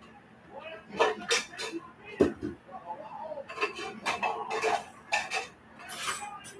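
Dishes and cutlery clattering and knocking on a kitchen counter as they are cleared and put away, in irregular bursts with one louder knock about two seconds in.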